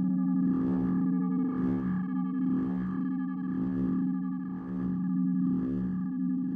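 Rast Sound's Sounds of Mars synth drone playing in Kontakt. It holds a steady low chord of two pitches, with a rhythmic pulse sweeping through it about twice a second.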